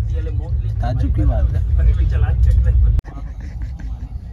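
Low, steady rumble of a passenger train running, heard from inside the sleeper coach, with voices talking over it. About three seconds in it drops abruptly to a quieter rumble.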